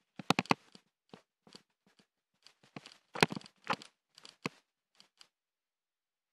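Irregular crackling and crunching noises, in short sharp bursts with silent gaps between them, the loudest clustered just after the start and around three seconds in, during a bicycle ride over dirt and grass.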